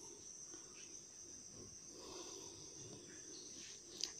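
Near silence: quiet room tone with a faint, steady high-pitched whine that never changes, and slight handling sounds near the middle.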